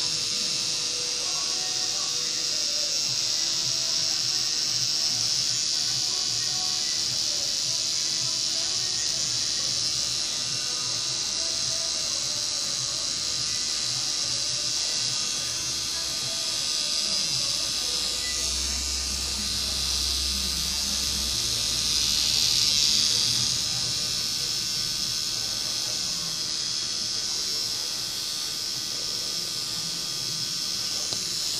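Permanent-makeup machine pen running with a steady electric buzz and high hiss while the needle works on the skin.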